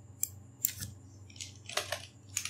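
A few sharp computer keyboard and mouse clicks, spaced out over the two seconds, as a name is typed into a text field.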